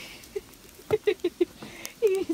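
A person coaxing a small dog with short, squeaky calls and mouth clicks. There is one call near the start, then a quick run of them about a second in.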